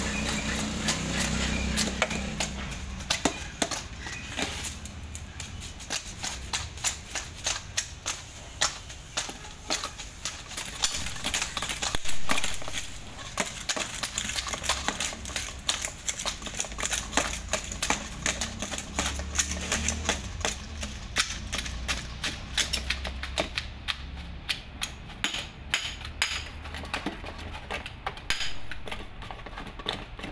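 Repeated sharp knocks and taps of a metal rod ramming sand down into red moulds and striking the moulds, irregular and several a second, with a louder burst of knocking about 12 s in.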